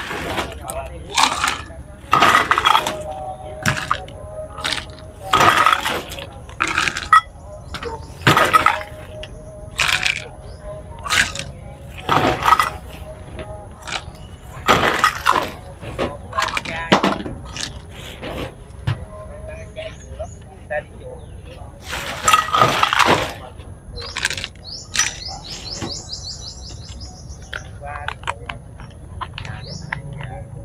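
Plastic bags crinkling and crackling in irregular sharp spurts as offerings are unpacked and handled on a table, with voices in the background.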